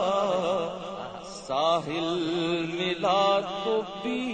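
A voice singing an Urdu naat, drawing out ornamented, wavering notes between lines of the verse. A steady low drone sits beneath it.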